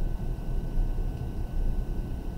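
Graphite pencil shading back and forth on paper over a desk, an uneven low rub with a steady faint hum beneath.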